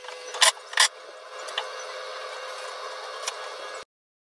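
Two sharp mechanical clacks about a third of a second apart as a cabinet door's hinge hardware is worked, then a couple of light ticks over a steady room hum. The sound cuts off suddenly near the end.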